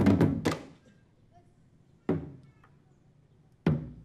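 Balinese drums struck sparsely: a quick flurry of strikes dies away in the first moment, then two single strikes follow about a second and a half apart, each ringing briefly before fading.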